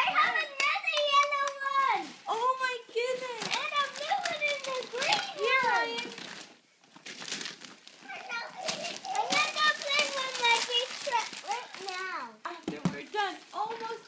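Young children's voices talking and calling out in a small room, with a short lull about halfway through.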